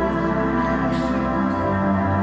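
Slow orchestral music with sustained string chords; a new chord with deeper bass comes in about a second and a half in.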